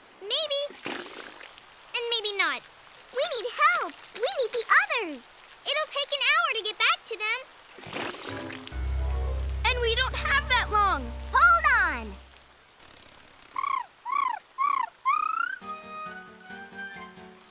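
Cartoon soundtrack: wordless high-pitched character vocalisations and exclamations over music, then a low steady rumble of water gushing through an earth bank for a few seconds past the middle, and a few short arching chirps near the end.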